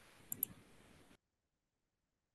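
Two quick sharp clicks, close together, over faint room noise from an open microphone; about a second in, the sound cuts off abruptly to dead silence.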